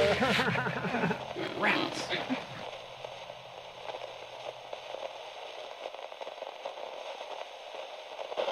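Voices crying out and trailing off over the first couple of seconds, then a faint, steady crackle of static hiss.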